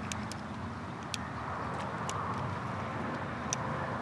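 Faint steady outdoor background noise with a few light, sharp ticks scattered through it.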